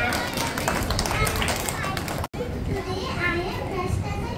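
Many children chattering at once, a busy overlapping babble of voices, with a sudden split-second dropout a little past halfway.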